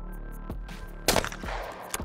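Single shotgun shot from an over-and-under shotgun, a sharp crack about a second in with a short echo trailing after it, breaking a skeet clay target. Background music plays throughout.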